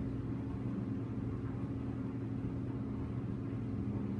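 A steady low mechanical hum, unchanging throughout.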